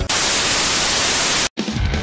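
A loud burst of white-noise static, a glitch transition effect, lasting about a second and a half and cutting off suddenly. Guitar-led rock music comes back in near the end.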